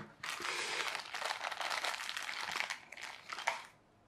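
Thin plastic packaging bags crinkling as they are handled and the parts are slipped back inside. The dense crackle lasts about three seconds, then dies away.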